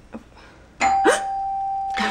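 A sudden noisy burst with a short rising sweep about a second in, then one steady high tone that holds on without a break.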